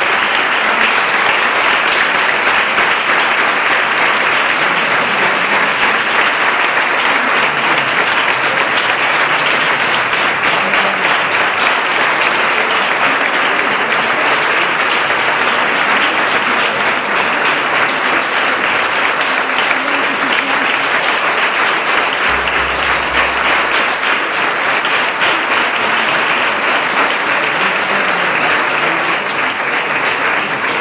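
A large audience applauding, with dense, sustained clapping that holds steady for about half a minute and eases off slightly near the end.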